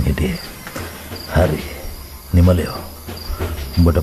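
Crickets chirping steadily in the background, short high chirps about twice a second, the night ambience of a radio drama scene. A few brief voice sounds break in.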